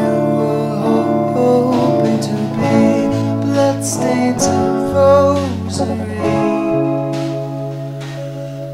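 Indie pop band recording in an instrumental stretch of the song: guitars over bass and drums, with no words picked out.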